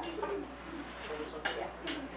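Low murmur of conversation at a dinner table, with two short clinks of tableware about a second and a half in.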